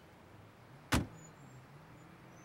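A car door shutting with a single solid thud about a second in.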